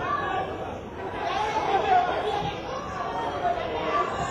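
Indistinct chatter of spectators' voices at a football ground, with no words picked out.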